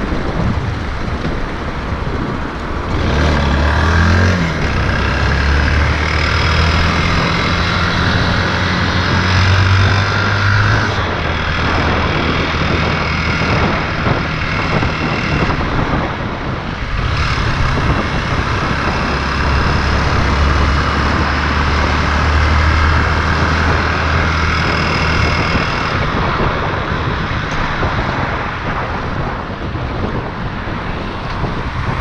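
Motorcycle engine under way, with wind rushing over the microphone. The engine pulls with a rising note about three seconds in, runs steadily, eases off near the middle, and pulls again from about seventeen seconds in.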